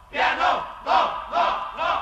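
A group of voices chanting in short rhythmic shouts, about four in two seconds, as a vocal break in the background music.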